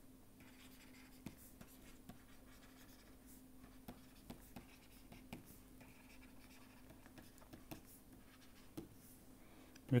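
Pen writing on paper: faint scratching with light ticks of the pen, over a steady low hum.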